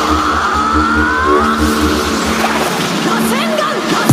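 Riddim dubstep track in a breakdown: held synth chords with a high gliding sound effect rising through the first second, over a pulsing sub bass that cuts out about two and a half seconds in, building to the drop.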